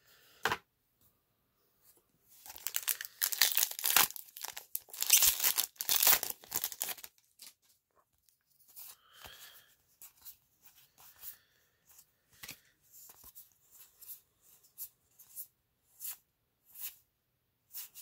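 A Magic: The Gathering booster pack's wrapper being torn open and crinkled, loudly for about four seconds. After it, trading cards are slid off the stack one at a time with short soft flicks.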